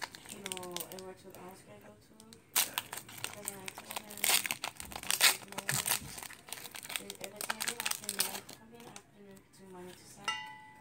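Foil wrapper of a Pokémon Evolutions booster pack crinkling as it is torn open by hand, then rustling as the cards are pulled out. The crinkling is loudest from a few seconds in until about the middle.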